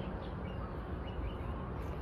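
Steady low outdoor background noise with a few faint, short bird chirps.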